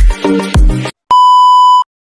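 Electronic intro music with a heavy kick-drum beat that stops about a second in, followed after a short gap by a single steady electronic beep lasting under a second.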